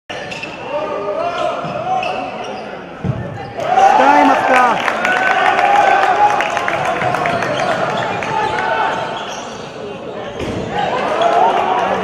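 Handball match play on a wooden gym floor: the ball bouncing, sneakers squeaking and players calling out, echoing in a large hall. It gets louder and busier about three and a half seconds in.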